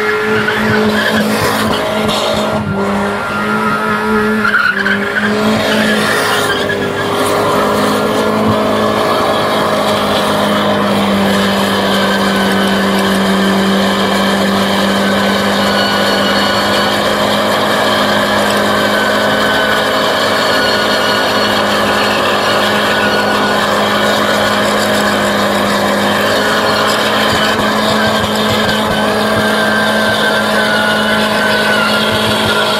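Car engine held at high revs while the rear tyres spin and squeal in a smoky burnout. The engine note wavers for the first few seconds, then holds steady, dipping slightly near the end.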